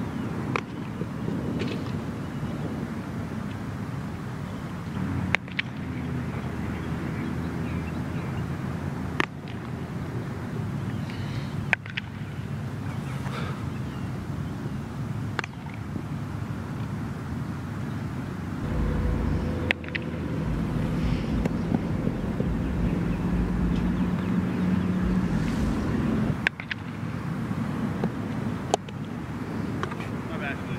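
Wind on the microphone over a steady low hum, which grows louder about two-thirds of the way in. Sharp single cracks break in every few seconds.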